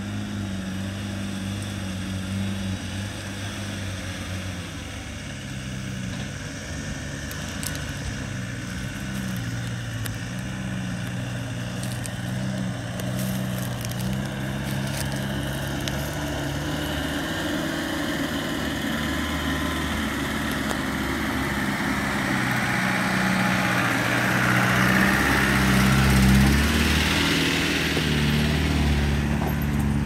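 Land Rover Defender 130's engine pulling at low revs as it drives slowly over rough, rocky ground, its pitch stepping up and down. It grows louder as the vehicle draws near and passes close by near the end.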